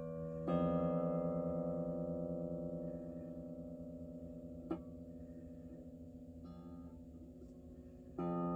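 An electric guitar chord strummed once about half a second in and left to ring, fading slowly over several seconds, with a light click near the middle and a few quiet plucked notes near the end.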